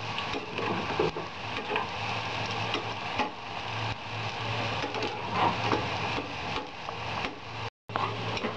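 Diced potatoes sizzling in hot oil in a steel pan, with a spatula stirring them and clicking against the pan. A steady low hum runs underneath, and the sound cuts out briefly near the end.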